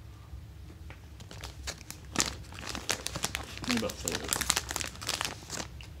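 Dense crackling and crinkling as a wrapped ice cream sandwich is held and eaten close to the microphone. It starts about a second and a half in and runs on in quick, irregular clicks until just before the end.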